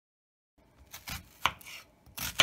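Chef's knife cutting through an onion onto a cutting board: silent at first, then a few quick cuts starting about a second in.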